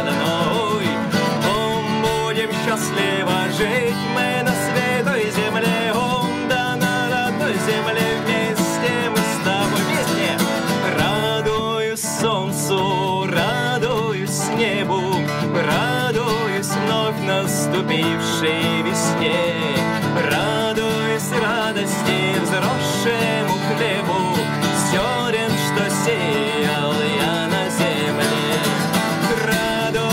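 A man singing to his own strummed acoustic guitar, a continuous song with a steady strum.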